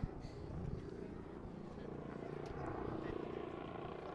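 Steady outdoor background with a low engine-like rumble and a faint hum, even throughout.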